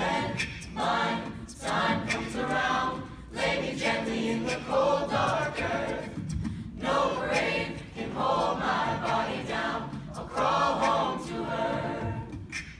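A mixed a cappella choir singing in phrases of a second or two with short breaks between, a male solo voice over the group, and beatboxed percussion clicks keeping time.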